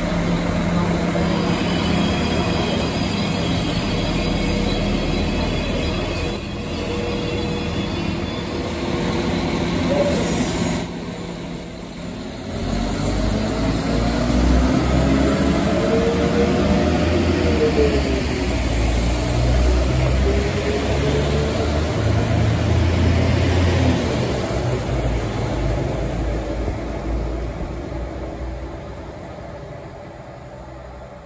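West Midlands Railway Class 196 diesel multiple unit pulling away from a station. Its engines first run steadily, then throb louder as the train accelerates, the engine note rising, dropping once and rising again. The sound fades as the train draws away.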